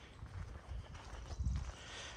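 Faint footsteps on gravelly pavement: a few soft, irregular steps.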